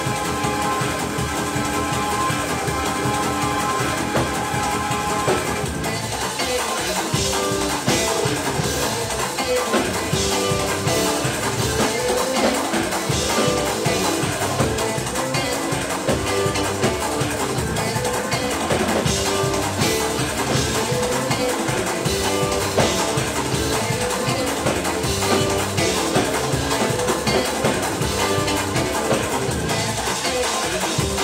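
Church band playing an upbeat instrumental on drum kit and guitar, with a steady beat; the drums become more prominent after about six seconds.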